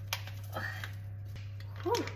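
Small clicks and light handling noise from a jar and foil packet of chili powder being tipped over a stainless steel bowl, over a steady low hum.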